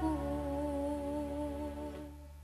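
Amplified female singing voice holding one long note of a sholawat song that dips slightly in pitch and fades, over a low steady bass tone.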